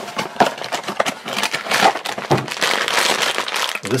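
Funko Mystery Minis cardboard blind box being opened by hand and the foil-wrapped figure pulled out, the foil bag crinkling and crackling irregularly.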